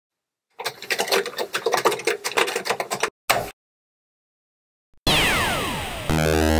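Rapid typing on a Commodore 64's mechanical keyboard for about two and a half seconds, then a single further keystroke. After a short silence, a loud electronic synthesizer tone with falling pitch sweeps starts about a second before the end.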